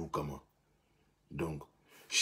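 A man's voice in two short voiced sounds, one at the start and one about a second and a half in, with a near-silent pause of under a second between them.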